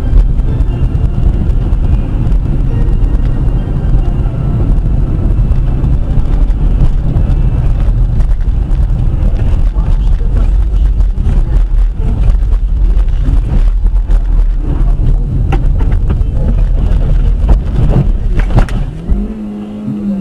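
A car on the road: a steady, loud low rumble of engine and tyre noise, with a couple of sharp knocks late on.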